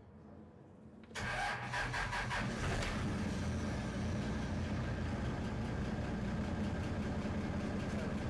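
Boat engine started with a push-button starter: it catches about a second in and settles into a steady idle.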